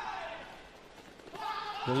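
Mostly speech: a man's commentary voice trailing off over faint arena noise, a short lull, then voice again building near the end.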